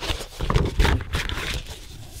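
Large glossy printed paper sheets being handled and turned: stiff paper rustling and flexing, with a few light taps and flaps, two of them within the first second.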